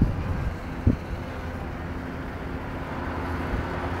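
Steady low hum of a slow-moving car's engine in the distance, with wind rumbling on the microphone and one brief thump about a second in.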